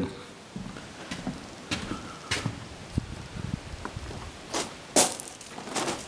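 Irregular footsteps and light knocks of a person walking with a handheld camera, with a few sharper clicks; the sharpest comes about five seconds in.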